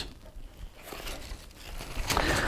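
Faint rustling and crinkling of a travel BCD's nylon fabric and webbing straps being handled by hand, with a few small soft knocks.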